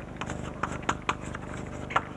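Chalk writing on a blackboard: irregular sharp taps and short scratches, several a second, as words are written out.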